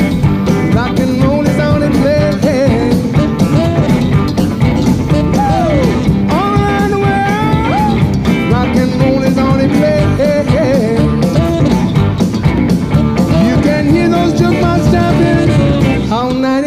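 Live rock and roll band playing, loud and steady, with a lead line of held notes that slide up and down over the rhythm section.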